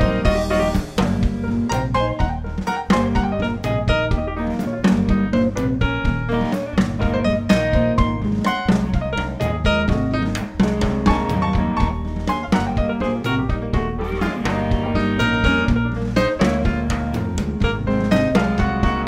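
Instrumental passage of a live blues-rock trio: a stage keyboard playing quick runs of notes over electric guitar and a drum kit keeping a steady beat, with no singing.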